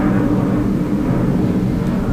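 A steady low hum at an unchanging level.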